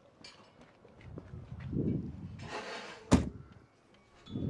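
Citroën Ami door swung shut, closing with one sharp, loud bang about three seconds in, just after a brief rush of noise from the swing.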